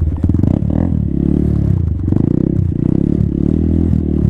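A 2017 Honda Grom's 125 cc single-cylinder engine revved up and dropped back about four or five times in a row, the rear wheel spinning on snow in attempted donuts.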